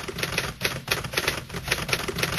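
Typewriter sound effect: a rapid, uneven clatter of keys striking, about seven a second.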